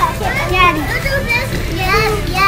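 A young child talking in a high voice, in short phrases, over a steady low rumble of room noise.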